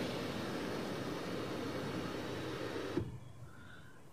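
Electric sunroof of a 2023 Hyundai Verna sliding open, heard from inside the cabin: a steady motor hum with the glass panel gliding back. It stops with a click about three seconds in as the sunroof reaches fully open.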